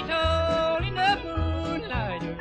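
Bluegrass band music: a high melody line holds long notes and slides between them, over a steady band accompaniment.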